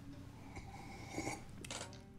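Quiet lull in the song with faint small clinks of a drinking glass, once about a second in and again near the end.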